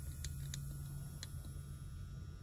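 A few faint, light clicks over a steady low hum, handling noise as the saw and phone are moved about.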